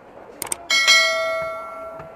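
Subscribe-button overlay sound effect: two quick clicks, then a bright notification-bell ding that rings out and fades over about a second.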